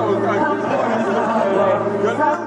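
Several people talking at once: lively group chatter.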